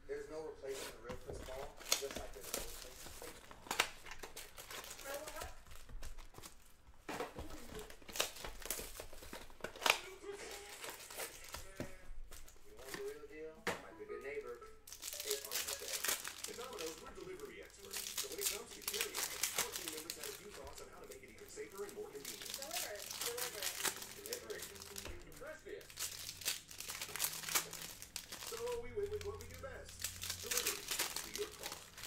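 Plastic wrapping on sealed trading-card boxes and packs crinkling and tearing as it is handled and ripped open by hand. The crackling gets denser and louder from about halfway through, as the foil card packs are torn open.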